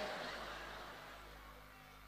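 The echo of a man's amplified voice dies away through a PA system over about a second. After that only a faint steady electrical hum is left.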